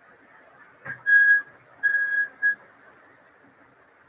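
Whiteboard marker squeaking against the board as it is drawn across, three steady high squeaks at one pitch: two of about half a second and a short one.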